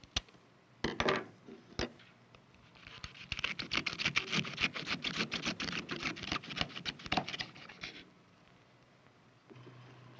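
Kitchen shears snipping the tough leaf tips of a raw artichoke, a few separate snips in the first two seconds. Then a knife saws through the artichoke's top with a rapid, crunchy scratching for about five seconds before stopping.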